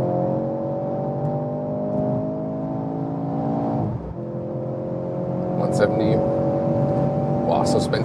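Mercedes-AMG C43's turbocharged four-cylinder engine at full acceleration, heard inside the cabin. Its note climbs steadily, drops once about four seconds in at a gear change, then climbs again.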